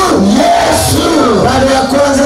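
A congregation praying aloud together, many voices overlapping, over worship music with held notes.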